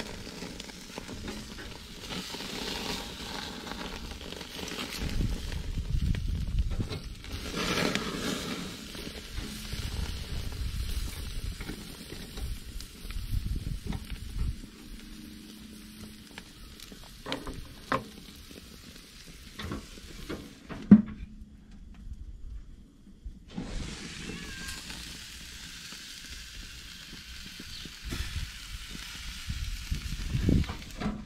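Pork chops and a T-bone steak sizzling on a grill grate, with a few sharp clicks of metal tongs against the grate in the second half.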